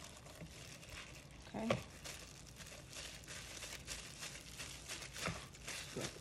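Disposable plastic food-prep gloves crinkling and rustling as hands grab and pull apart raw ground beef in a plastic mixing bowl, a string of faint irregular rustles. A brief voice sound about a second and a half in.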